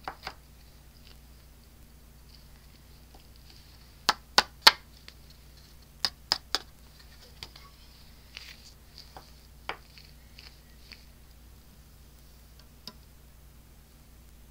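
Sharp light taps in two quick runs of three, with a few scattered knocks and rustles: a cardstock panel and a plastic embossing-powder tray being tapped and handled to knock loose embossing powder off the stamped card.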